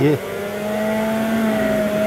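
Electric centrifugal juicer switched on, its motor starting just after the beginning and running with a steady hum.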